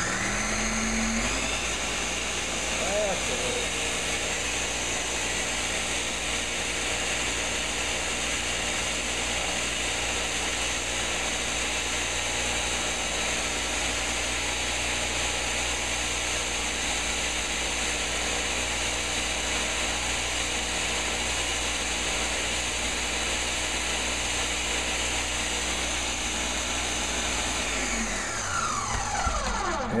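Ninja countertop blender running, blending frozen fruit, baby spinach and soy milk into a smoothie. The motor spins up with a rising whine at the start, runs steadily, and winds down with a falling whine near the end.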